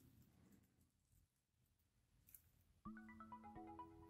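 Near silence, then soft background music with a slow melody of held notes begins about three seconds in.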